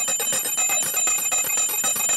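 Brass puja hand bell (ghanta) rung rapidly and continuously, its strokes running together into a steady ringing, as the incense offering is made to the deity.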